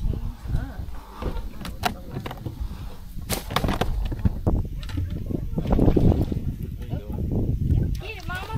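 A few sharp knocks and clatters of gear on a fishing boat, with a steady low rumble of wind on the microphone that swells for a few seconds near the middle.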